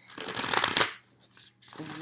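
A deck of tarot cards being riffle-shuffled by hand: a fast flutter of cards slapping together, lasting under a second.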